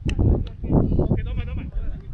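Players' voices calling out across an outdoor soccer pitch, in short shouts, with a sharp knock right at the start and a low wind rumble on the microphone.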